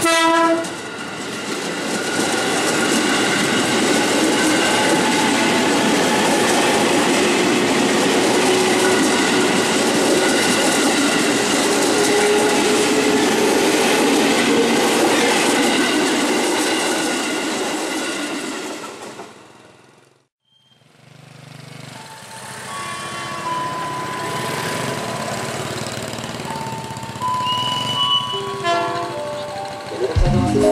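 A KRL commuter electric multiple unit of the ex-JR 205 series finishes a short horn blast just as it reaches the crossing, then runs close past, loud and steady, until it fades away at about 19 seconds. After a sudden cut, a quieter train and steady warning tones are heard, typical of a level-crossing alarm.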